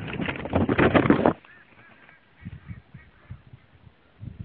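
Birds honking loudly for about the first second, then fainter calls over a few low thumps.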